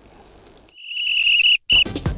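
A referee's whistle sound effect opens the sports ident: one long, loud, steady blast, then a short second blast. Music with a beat starts right after, near the end.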